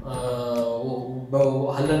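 A man speaking Kannada in slow, drawn-out phrases, his vowels held long.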